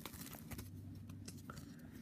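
Faint handling noise: a paper card and pamphlets being picked up and moved about, with scattered small clicks and rustles over a low room hum.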